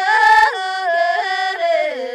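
A single voice singing a slow melody in a high register, holding long notes with ornamented turns and slides between them; the pitch drops near the end.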